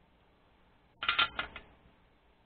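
A short clatter of four or five light, hard clicks, like a soldering iron being set down on the bench or in its stand, about a second in.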